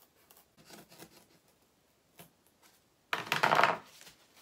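A craft knife scraping faintly along a foam core board in a few short strokes. About three seconds in, a loud crackling snap of under a second as the board is bent up and breaks along the scored line.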